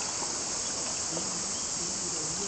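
Steady high-pitched drone of an insect chorus, with faint murmured voices in the second half.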